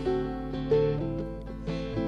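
Instrumental backing of a country-style folk song, a plucked-string (guitar) part holding chords, with new notes coming in about every half second and no voice.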